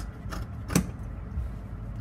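Fabric scissors cutting through folded cotton shirting along an armhole curve: a few sharp clicks of the blades closing, the loudest about three-quarters of a second in.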